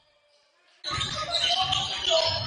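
Near silence, then about a second in the sound of a basketball game cuts in: a basketball dribbled on a hardwood gym floor in repeated low thumps, over the echoing voices of players and spectators, with a laugh.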